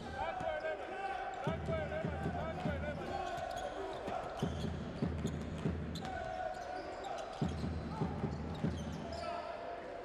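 A basketball dribbled on a hardwood court, its bounces sounding as repeated short thuds, with short squeaks and crowd voices in the arena.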